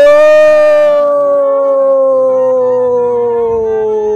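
One long, loud howling cry that starts suddenly, is held for about five seconds and slides slowly down in pitch before cutting off.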